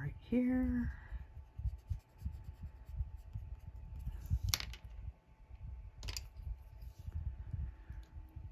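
Colored pencil shading on cardstock, heard as a run of soft, irregular low rubbing strokes, with a short hummed note right at the start. Two sharp clicks about four and a half and six seconds in, as the pencil is set down on the table.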